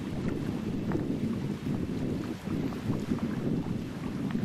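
Light, gusty wind buffeting the microphone: an uneven low rumble that swells and dips.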